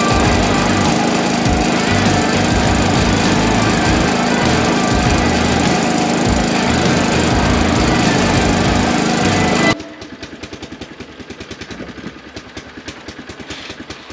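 Engine-driven seed tender auger running steadily while it pours oats into a grain drill's hopper. It stops suddenly almost ten seconds in, leaving a quieter rapid rattle.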